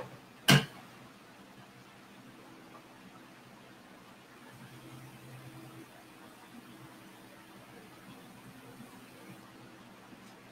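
One sharp click about half a second in, then a faint, steady low hum of room tone.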